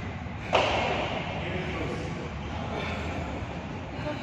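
A badminton racket strikes a shuttlecock once, sharply, about half a second in. The hit echoes and fades over about a second in a large hall, with voices in the background.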